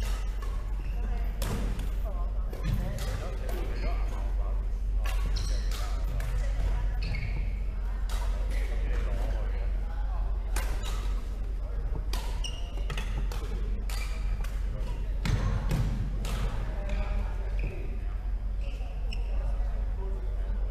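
Badminton play: irregular sharp racket hits on the shuttlecock and footfalls on a wooden sports floor, with voices in the background and a steady low hum.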